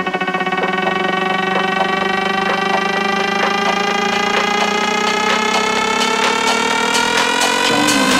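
Electronic dance music build-up: a buzzy synth tone glides slowly upward in pitch, rising faster toward the end, over a steady beat, and leads into a change in the track just before the end.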